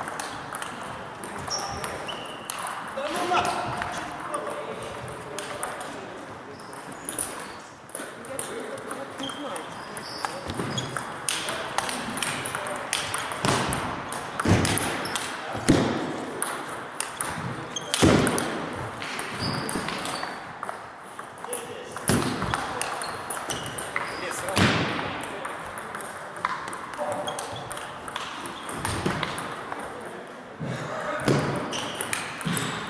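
Table tennis ball clicking off rackets and the table in quick rallies, with gaps between points.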